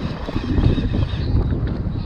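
Wind buffeting the microphone aboard a boat at sea: a steady low rumbling noise.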